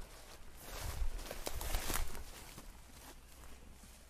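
Footsteps and rustling in grass close by, rising to a rustle for a second or so near the middle, with a few light knocks.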